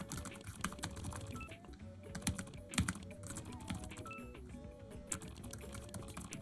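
Fast touch-typing on a Microsoft Surface Laptop Go keyboard: a rapid, quiet patter of soft key clicks. Faint background music runs underneath.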